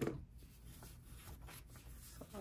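Paper prop-money bills rustling as hands handle and fan out a stack, with a short bump, the loudest sound, right at the start.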